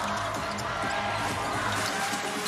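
A basketball dribbled on a hardwood court, with arena music playing over it.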